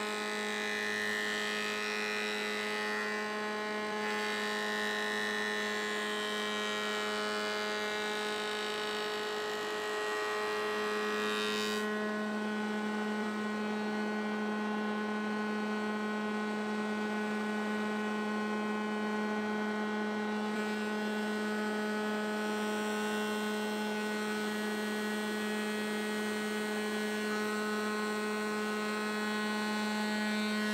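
Spindle moulder running with a large 100 mm profile cutter, a steady pitched hum, as a curved laminated poplar cornice is fed by hand past the cutter. A rougher, hissing cutting sound sits over the first twelve seconds or so, then drops away and leaves the machine's steady hum.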